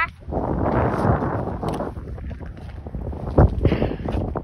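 Wind buffeting a phone microphone, strongest in the first two seconds, with one sharp knock about three and a half seconds in.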